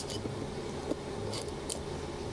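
A few short, light scrapes of a small tool cleaning old adhesive off a smartphone's frame, with a steady low hum behind.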